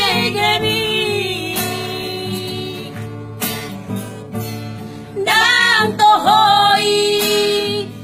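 Several women singing a Batak pop song to acoustic guitar. The voices hold a note at the start and fall away, leaving the strummed guitar for a few seconds, then come back in about five seconds in.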